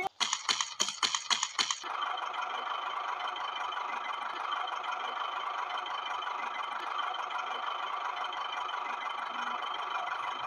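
Quick series of clicks and rattles for about the first two seconds, then the small electric motor of a toy tractor whirring steadily as it drives along.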